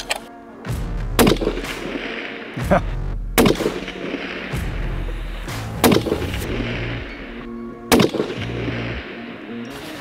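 Bolt-action precision rifle firing a string of about five shots, each a sharp crack, spaced roughly one to two and a half seconds apart.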